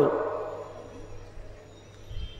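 Pause in amplified chanted preaching: the last phrase rings on in the public-address echo and dies away over about a second, leaving a faint steady low hum from the sound system.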